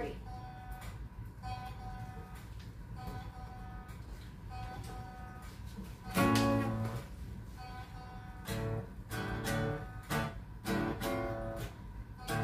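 A short musical loop plays back quietly from a laptop, its phrase repeating at even spacing. About six seconds in, an acoustic guitar joins with louder strummed chords.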